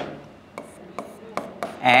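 Pen tapping and scratching on an interactive touchscreen board during handwriting: an irregular run of sharp clicks, several in two seconds, with faint scraping between them.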